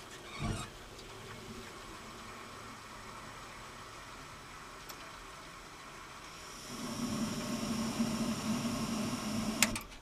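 Gas burner of an old Vaillant combi boiler lighting with a soft thump about half a second in, then burning low before its flame rises, about seven seconds in, to a louder steady burn with a hum and a hiss. The delayed step up to full flame is the slow gas-valve opening the engineer has just adjusted for, instead of going straight to high flame; a sharp click comes near the end.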